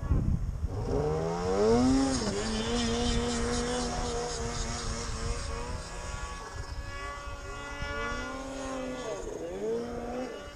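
Snowmobile engine revving up about a second in, then running at a steady speed with a hiss of track and snow. Near the end it eases off and picks up again.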